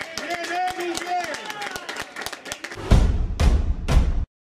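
Men's voices chanting and shouting, with scattered hand clapping. About three seconds in, a loud outro music sting with deep booming hits takes over.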